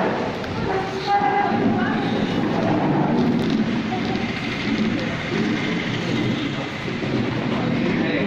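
Several people talking over one another in a small room: a steady mix of indistinct voices with no single clear speaker.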